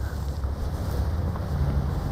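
A steady low rumble of room background noise, with no speech.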